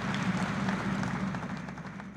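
Studio audience applause, a dense steady wash of clapping.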